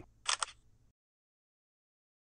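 Camera shutter sound: a quick double click as a photo is taken, triggered remotely with the S Pen button.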